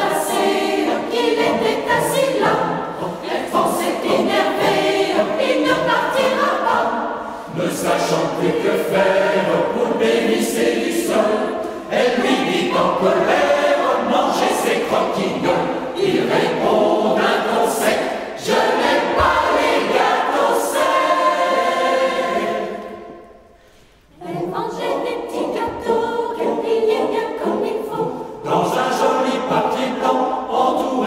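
Mixed choir singing a French chanson, many voices together. There is a brief break between phrases about three-quarters of the way through before they sing on.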